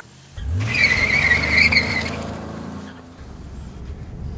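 Dodge Ram pickup truck pulling away hard: the engine revs up and the tyres squeal for about a second and a half, then the engine and road noise fade as it drives off.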